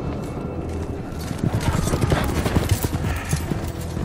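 Hoofbeats of a ridden horse passing close by, growing louder about a second in and dense and irregular through the middle.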